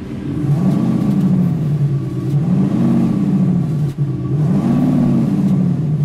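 Infiniti FX50S V8 with an iXsound active exhaust sound system playing its AMG sound profile through the exhaust speakers. The engine is revved three times, each rev rising and falling over about a second and a half, with idle between.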